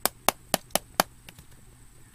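Fingers tapping on a shrink-wrapped steel CD case, five sharp taps in the first second at about four a second, then a couple of fainter ones.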